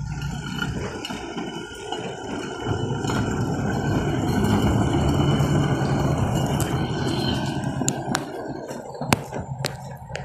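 Hi-rail pickup truck running along a railroad track, its engine and rail wheels growing louder as it passes close and then fading as it moves away, with a thin steady squeal over the rumble. A few sharp clicks come near the end.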